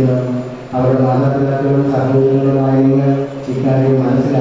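A man's voice intoning a liturgical chant on long, steadily held notes, with a short break a little under a second in.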